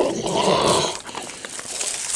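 Golden retriever snuffling with its muzzle pressed right against the microphone: a loud, close burst for about the first second, then softer.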